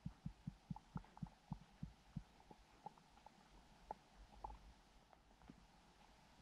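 A faint frog call: a train of low pulses that slows down and dies away in the first two seconds or so, with scattered short, higher pips throughout.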